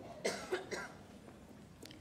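A woman coughing three times in quick succession into a podium microphone.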